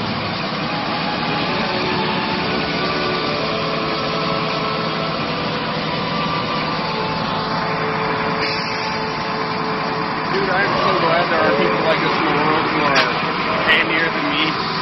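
A heavy vehicle's engine running steadily at a constant pitch. Indistinct voices join in from about ten seconds in.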